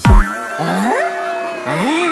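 The dance beat stops abruptly just after the start, and cartoon-style sliding-pitch sound effects follow: several tones that bend up and down. They end with a rising-then-falling swoop, a comic 'wrong' cue.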